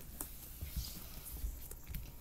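Faint low thumps and a few light taps of handling noise, as hands move over and press on the pieces of a floor puzzle.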